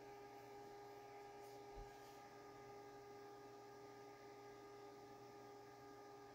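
Near silence: a faint, steady electrical hum in the recording.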